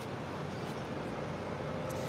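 Steady street background with a low rumble of traffic.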